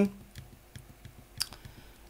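Computer keyboard keystrokes: a scattered run of light clicks as a terminal command is typed, with one sharper click about a second and a half in.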